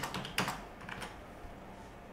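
Computer keyboard typing: a few separate keystrokes, most of them in the first second, then quieter.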